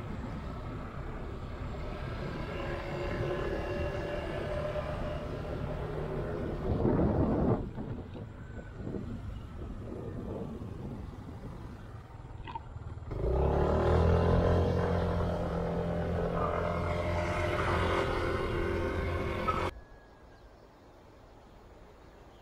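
A vehicle's engine running while driving, with road and wind noise. The sound changes abruptly about a third of the way in and again past halfway, where it gets louder with a deeper engine hum, then drops off sharply near the end to a quieter background.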